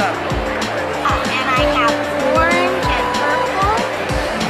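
Background music with a steady beat, held synth notes and short swooping sounds that rise and fall.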